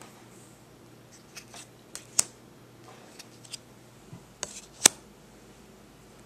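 Playing cards being dealt onto a hard countertop: a string of sharp clicks and snaps, the two loudest about two seconds in and just before five seconds in.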